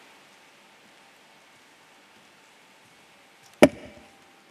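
Faint room tone, then about three and a half seconds in a single sudden loud thump on the wooden lectern, picked up by its microphone as the next speaker steps up to it.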